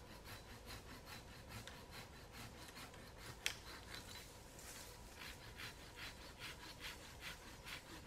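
Hand saw cutting through a branch in quick, even strokes, faint, with one sharper click about halfway through.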